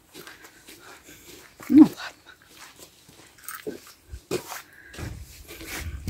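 A dog whimpering in a few short whines, the loudest about two seconds in.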